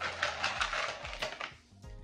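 Rustling and clattering of small aquarium rocks being handled in their packaging, a dense burst lasting about a second and a half that then dies away.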